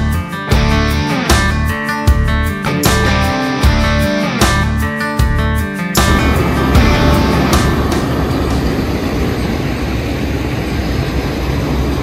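Rock music with strummed guitar and a steady beat, which stops abruptly about halfway through. After that comes the steady running noise of a Gleaner S98 combine harvester's engine.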